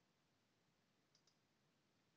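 Near silence, broken about a second in by a very faint double click from a computer mouse advancing the presentation slide.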